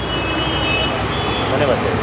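Busy outdoor street-market ambience: a steady rumble of passing road traffic mixed with the murmur of shoppers' voices, one voice rising faintly about one and a half seconds in.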